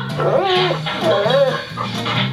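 An Airedale terrier whining, its cries rising and falling in pitch several times, over background music with a repeating bass line.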